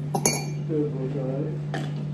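A metal teaspoon clinks sharply against a ceramic mug and a glass coffee jar as instant coffee is spooned in, with a short voice sound in the middle and one more click near the end.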